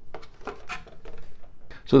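Light plastic clicks, taps and scrapes as the Traxxas Maxx RC monster truck's clipless, quick-release body, with its hard plastic internal support frame, is lifted off the chassis.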